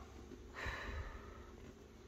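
A faint, short breathy hiss from about half a second to just over a second in: a person's sharp breath, taken in a startle.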